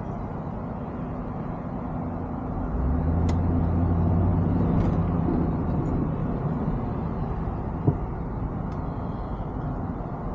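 Car engine and road noise heard from inside the cabin while driving slowly. The engine's low hum grows louder about three seconds in as it picks up speed, then eases off, with a brief knock near the end.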